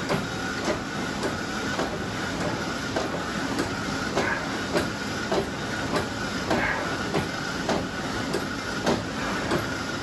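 Vasa swim ergometer's air-resistance flywheel whirring steadily as the pull cords are drawn in alternating swim strokes, with a faint steady whine and light regular clicks a little under twice a second.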